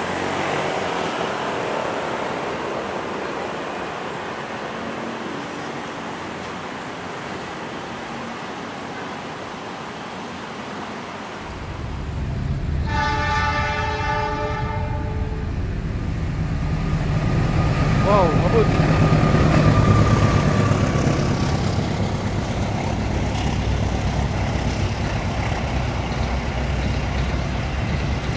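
Station ambience as a passenger train moves through. Then a diesel locomotive sounds one horn blast of about two seconds, and the locomotive-hauled express passes close by with a heavy low rumble of engine and wheels on rail, loudest about twenty seconds in, with a thin steady whine among it.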